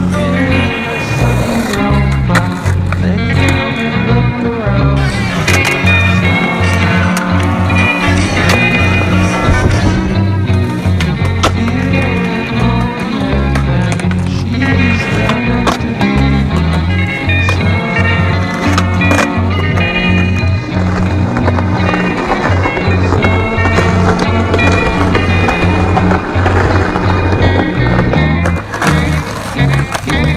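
Music with a steady bass line plays throughout, with street-skateboard sounds under it: wheels rolling on pavement and occasional sharp clacks of the board.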